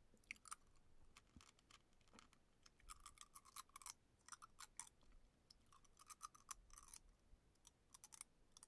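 Faint, irregular clicks and crackles from a glass mug of sparkling water held in the hands, coming in short clusters with brief gaps.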